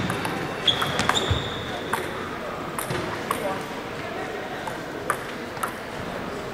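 Table tennis ball giving irregular light clicks as it is bounced and handled between points. A thin high tone, squeak-like, rings for about a second and a half near the start.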